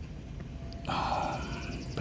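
A man's breathy sigh, about a second long, starting a little before the middle.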